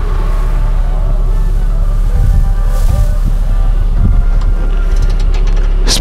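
Wind buffeting the camera microphone: a steady low rumble with a rushing hiss over it, and faint music tones underneath. A few light clicks near the end.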